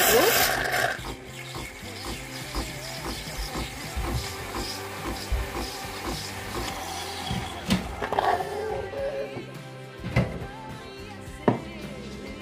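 Background music over a coffee machine's milk frother dispensing hot frothed milk into a mug, with a loud hiss in the first second.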